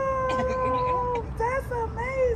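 A woman's drawn-out, sung-out exclamation: one long held note, then two shorter rising-and-falling calls near the end.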